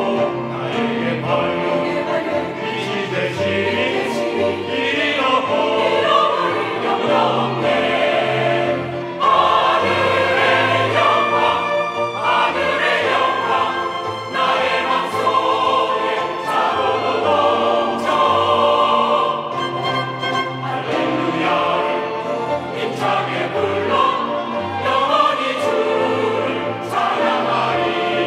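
A robed church choir singing a hymn in Korean, accompanied by strings and flute. The choir finishes a verse and moves into the refrain partway through.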